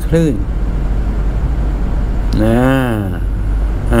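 A man speaking Thai in short bursts, a single word, a pause, then a long drawn-out syllable, over a steady low rumble that runs under everything.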